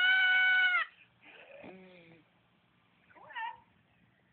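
A cat letting out one loud, long meow held at a steady pitch for under a second, followed by two fainter, shorter meows.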